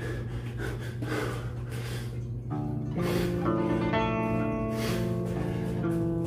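Background music: a backing track of held, pitched notes.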